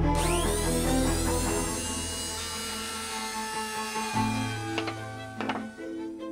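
Handheld trim router switching on and winding up to a steady high whine as it routs the tab angle on a fiberglass fin in a jig. A few sharp knocks come near the end, over background string music.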